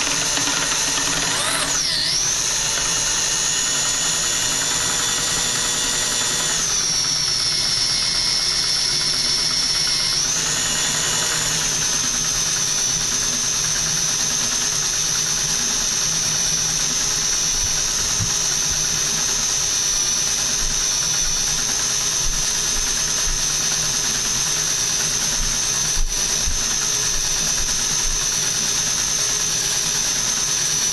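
Electric drill spinning a stirring rod in a glass carboy of wine, running steadily with a high whine, to stir the dissolved CO2 out of the wine. Its pitch dips briefly about two seconds in, drops a little around six seconds and comes back up around ten seconds as the drill's speed changes.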